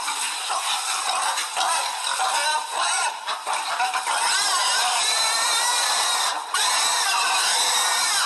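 Recording of a crowd of pigs squealing and grunting, played back into a meeting-room microphone: a loud, continuous din of overlapping squeals that rise and fall in pitch.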